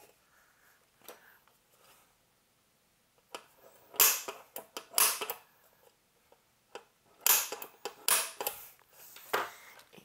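Several sharp clicks and knocks from handling and working on an aluminium chassis box set on a wood block. They are loudest about four and five seconds in, with a quick cluster around seven to eight and a half seconds.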